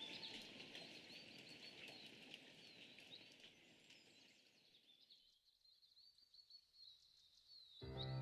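Faint recorded birdsong, short quick chirps, over a soft hiss that fades away about halfway through, leaving only the very quiet chirps.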